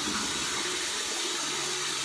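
Water running steadily from a tap into a sink, a constant hiss.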